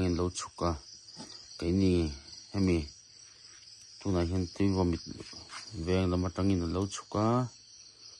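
A steady, high, even chorus of crickets running under people talking.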